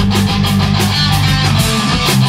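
Rock band playing live: two electric guitars, bass guitar, drum kit and keyboard together, at a loud, even level.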